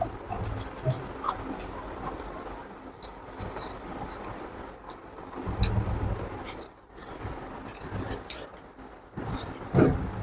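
Close-up mouth sounds of a person eating with his hands: chewing with short wet clicks and lip smacks. A low rumble comes twice, at the start and again about six seconds in, and there is a brief louder noise just before the end.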